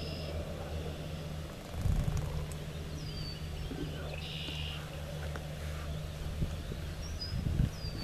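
Breeze buffeting the microphone as a steady low rumble, gusting louder about two seconds in. A few faint high bird calls sound over it: short downward whistles and a brief buzzy call.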